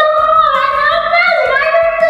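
High-pitched singing, a melody held on long, gliding notes.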